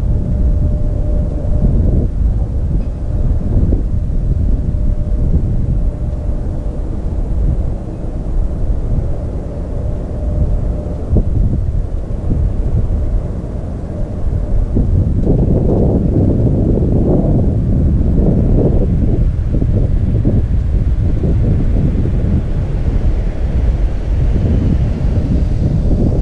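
Low rumble of an F-35B's jet engine at taxi, mixed with wind buffeting the microphone, growing louder and fuller about halfway through. A faint steady tone sits over the rumble in the first half.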